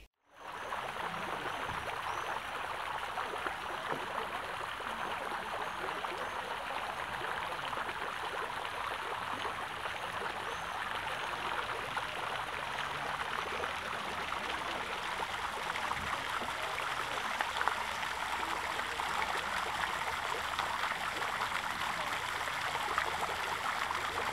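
Garden fountain splashing steadily, its jet of water falling back into the basin.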